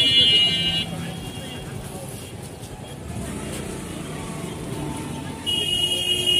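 A steady high electronic alarm tone, cutting off about a second in and starting again near the end, with road traffic noise between.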